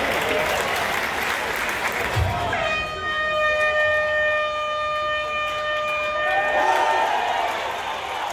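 Stadium full-time horn sounding one steady, held note for about three and a half seconds, marking the end of a rugby match. Crowd noise fills the stadium around it and swells after the horn stops.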